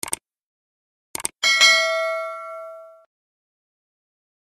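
Subscribe-button animation sound effect: a quick double mouse click, another pair of clicks about a second later, then a bright notification bell ding that rings out and fades over about a second and a half.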